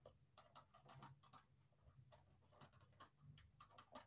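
Faint, quick taps and short scratches of a stylus on a drawing tablet as a row of short dashes is drawn, in two runs with a pause around the middle.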